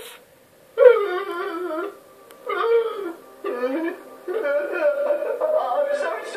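A high-pitched, cartoonish voice crying in long, wavering wails that break off and start again three times, heard through a TV speaker. It begins about a second in.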